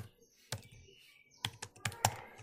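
Typing on a computer keyboard: a single keystroke about half a second in, then a quick run of about five keystrokes near the end.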